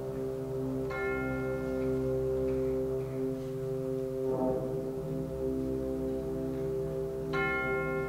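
School concert band holding a sustained low woodwind chord while chimes (tubular bells) are struck twice, about a second in and again near the end, each strike ringing out and fading.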